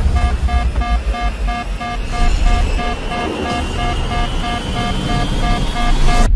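A small plane's cockpit warning alarm beeping rapidly and evenly, about three beeps a second, over a heavy low rumble as the aircraft is thrown about in distress. A thin high tone slowly rises through the second half.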